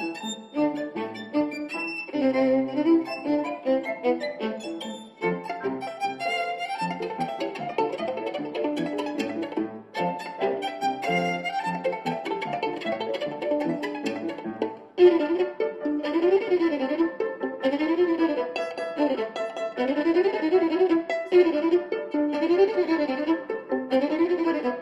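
Violin playing a classical piece with Steinway grand piano accompaniment. About fifteen seconds in, the violin breaks into quick runs that rise and fall continuously.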